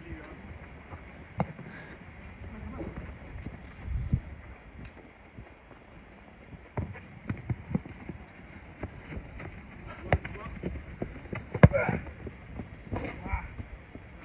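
A football being kicked during a small-sided game: scattered sharp thuds at uneven intervals, the loudest late on, with players' shouts in the background.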